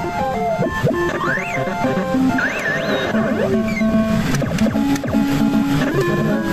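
Famista pachislot machine playing electronic retro-game music with stepped melody notes. Rising and falling sweep effects come in the first half, and sharp clicks in the second half.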